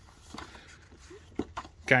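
Soft rustle of the paper pages of a board-game rule book being leafed through by hand, with a small tap about one and a half seconds in.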